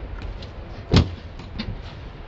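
A hand working a car's chrome exterior door handle: one loud clunk about a second in, with lighter clicks and rattles before and after it.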